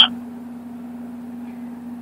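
A steady low electrical hum with a faint hiss on a phone-line recording, in a gap with no speech.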